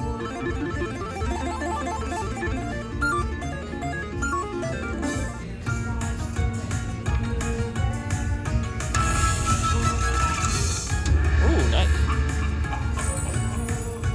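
Dragon Link Spring Festival slot machine playing its free-games bonus music, a busy melody of short plucked-string notes over a steady low hum. A louder, brighter shimmering flourish comes about two-thirds of the way through.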